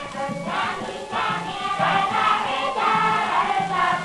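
Chorus of voices singing a Balinese janger song, from a pre-1930 recording, with a steady hiss beneath the voices.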